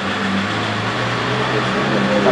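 A steady, low mechanical drone, like a motor or engine running, with no clicks or breaks.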